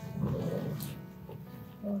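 Soft background music with sustained notes, with a low voice murmuring near the start and a short vocal sound near the end.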